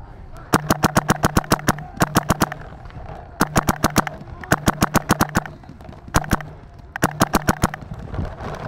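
Paintball marker firing in rapid strings, about eight shots a second, in six strings broken by short pauses, with a low hum under each string.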